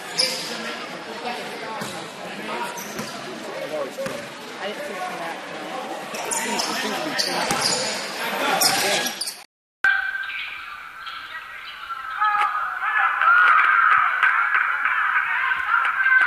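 Basketball game in a gym: voices and a basketball bouncing on the hardwood court, with scattered knocks. About ten seconds in, the sound drops out briefly and comes back as a thinner, muffled recording of game noise and voices.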